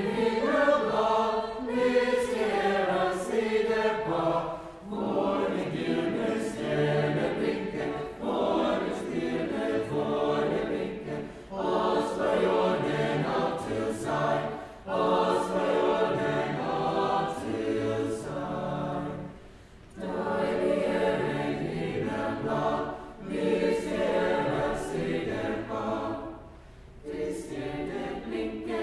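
Mixed choir singing a Christmas choral piece in phrases of a few seconds, with short breaks between them.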